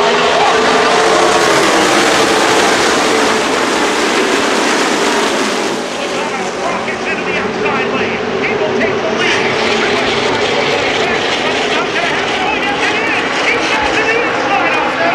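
A pack of NASCAR Cup stock cars' V8 engines passing the grandstand at racing speed, loud, their pitch bending as the cars go by; the sound drops off about six seconds in as the field moves away down the track, and spectators' voices come through.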